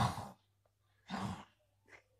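A young child's short breathy huffs: one at the start and another about a second later, each under half a second, with a fainter one near the end.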